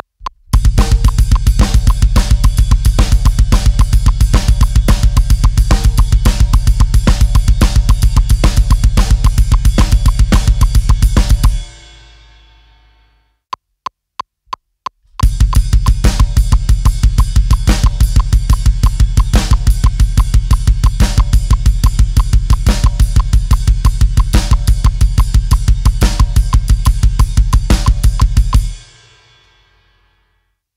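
Drum kit playing a fast heavy metal beat in 5/4, with rapid, steady bass drum strokes under snare and cymbal hits. It stops about 12 seconds in and the cymbals ring out. A few count-in clicks follow, then a second 5/4 metal beat at a slower tempo starts about 15 seconds in and stops near the end, ringing out again.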